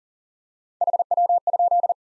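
Morse code sent at 40 words per minute, a single steady beep keyed on and off, starting about a second in and lasting about a second. It spells out the QSO element "how copy" in code.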